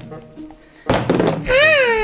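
A sudden thunk about a second in, followed by a high, wavering voice-like tone that rises and then falls.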